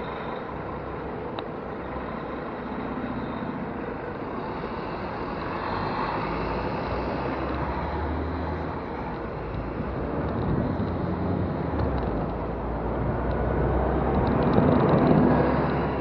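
Road traffic noise with a double-decker bus's engine running close by. The engine noise swells partway through and grows loudest near the end as the bus pulls ahead.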